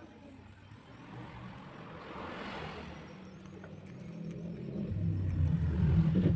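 A low, steady engine drone that grows louder over the last two seconds.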